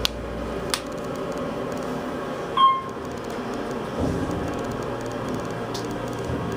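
Otis Series 1 hydraulic elevator car travelling: a steady machine hum from the running elevator, with two sharp clicks near the start and a single short electronic ding about two and a half seconds in.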